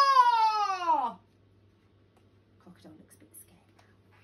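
A woman's drawn-out, high-pitched shout of "Run!", falling in pitch and ending about a second in. Near the middle come the faint rustles of a picture book's pages being turned.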